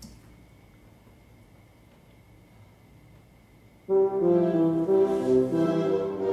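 Quiet room tone with a faint steady high tone, then about four seconds in the computer starts playing back a tuba part from Finale notation software: a melody of brass notes that starts abruptly.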